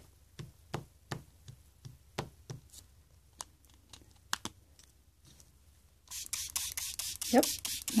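Light clicks and taps of a plastic stackable pigment ink-pad container being twisted open and handled, then about two seconds of dense, rapid scratchy hissing near the end.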